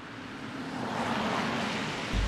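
A car passing on a city street: tyre and road noise that swells to a peak about a second in and then fades.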